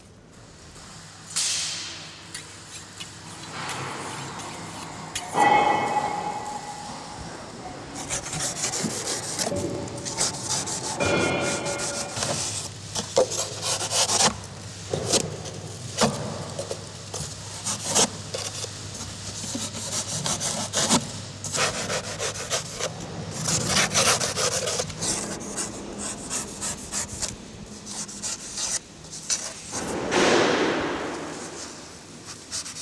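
A long knife blade shaving and scraping rigid foam in repeated short rasping strokes, about one or two a second, thickening after the first few seconds. A couple of brief squeaks come in between the strokes.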